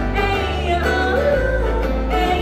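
Live Hawaiian hula music: a voice singing over ukulele and acoustic guitar, with sustained bass notes that change about a second and a half in.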